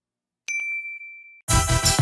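A single bright notification 'ding' sound effect for the bell icon being clicked in a subscribe animation, ringing on one steady high note for about a second. Near the end, music kicks in.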